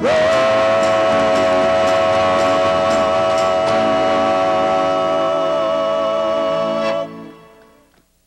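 A small acoustic band (guitar, bass, accordion) holds the final chord of a country-folk song. The chord is one long, wavering sustained note over the band, cut off sharply about seven seconds in and then dying away.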